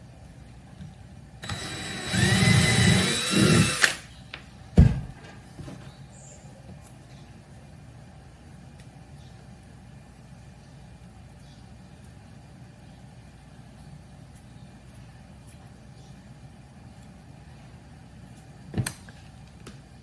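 DeWalt cordless drill running for about two and a half seconds as it bores a pilot hole into the end of a small hardwood block for an eye hook. Its motor pitch rises as it speeds up. A single sharp knock follows about a second after it stops, then only faint quiet handling, with a short click near the end.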